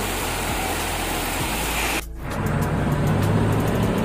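Steady hiss of heavy rain that cuts off abruptly about halfway through, followed by a quieter low hum with faint clicks.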